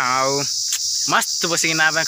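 Steady high-pitched buzzing of insects in the trees. A man's voice calls out over it: one long falling call at the start, then short rising calls near the end.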